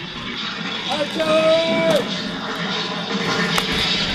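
A person's voice giving one long held shout about a second in, over steady background noise.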